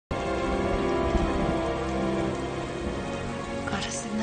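Steady rain falling, with held music tones sounding beneath it, from a film soundtrack.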